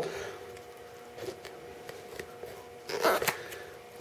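Quiet indoor room tone with a faint steady hum, a few light clicks, and one short breathy rustle about three seconds in.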